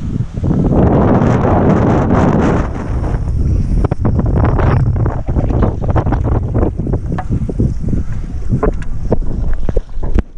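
Strong wind buffeting an action camera's microphone over choppy open ocean, heaviest a second or two in, then broken up by many short crackles and splashes of water.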